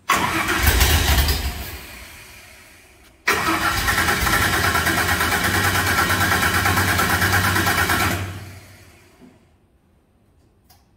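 Vintage truck's engine starting and running for about three seconds, falling away, then breaking off abruptly. It starts again straight after and runs steady and loud for about five seconds before dying away.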